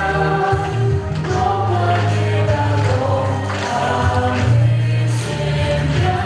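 Choral music: several voices singing long held notes over a deep, steady bass.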